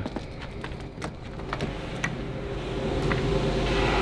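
A few light clicks and knocks over a steady rushing noise that swells toward the end: a person going through a door into a workshop.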